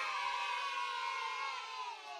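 A group of children's voices in a long, held cheer at the end of a song. The voices sag slightly in pitch and fade out near the end.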